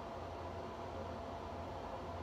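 Steady low hum with a faint even hiss: room tone.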